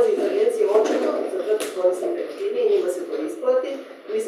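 Speech only: a woman talking continuously to the room.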